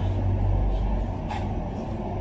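A low, steady rumble like a large vehicle engine idling nearby, easing off about halfway through.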